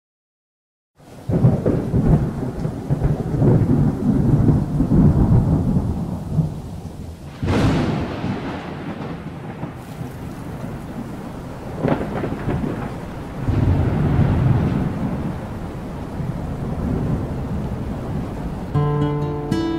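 Thunderstorm: rolling thunder over steady rain, starting about a second in, with two sharp thunderclaps about seven and a half and twelve seconds in, and another roll of thunder soon after the second.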